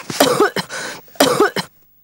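A woman's voice coughing in two short, rough bouts, the second about a second in.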